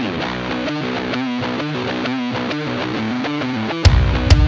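Background music: a picked guitar line plays a repeating pattern of notes. Just before the end, loud drum hits and a heavy low bass come in.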